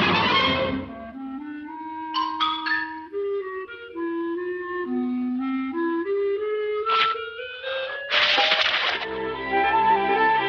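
Cartoon underscore: a sparse low woodwind line, clarinet-like, creeps along note by note, with short accents about two seconds in. A sharp hit comes about seven seconds in and a brief noisy crash just after eight seconds. The full orchestra comes in near the end.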